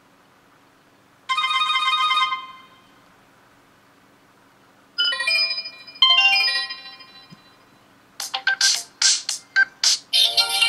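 UHANS A101 smartphone's loudspeaker playing short ringtone previews one after another. There is a single held note about a second in, two short chiming melodies that die away around the middle, and a run of short, bright notes near the end. The sound is fairly loud.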